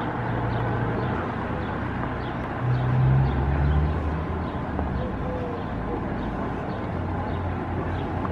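Street ambience with a low engine hum from traffic, growing louder about three seconds in and then settling back.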